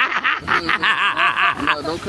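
A person laughing in a run of quick, breathy chuckles, about six a second, stopping near the end.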